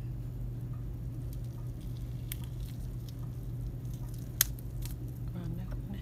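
Soft wet squishing and faint ticks of fingers tearing cooked chicken meat into strips, over a steady low hum, with one sharp click a little past the middle.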